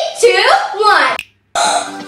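Children's voices, cut off by a brief dropout about a second in, then voices again.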